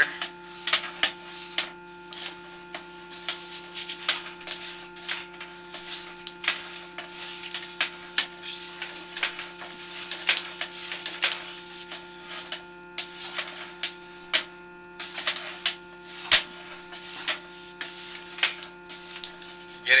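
Steady electrical hum from a sewer inspection camera rig, overlaid with irregular clicks and crackles, while the camera head sits at a dead stop against the blockage in the sewer line.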